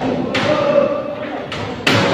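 Two sharp knocks of wooden planks and poles, about a second and a half apart, over people's voices calling out.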